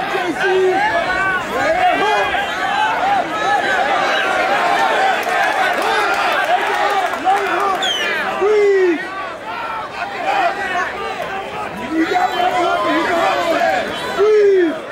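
Crowd of fight spectators shouting and yelling over one another, a steady din of many overlapping voices.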